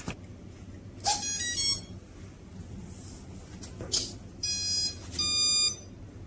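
Power-up beep tones from the RadioLink A560 RC plane's electronics after its battery is connected: a short run of stepped tones about a second in, then two longer beeps near the end, marking the power-on self-check of the flight controller and speed controller.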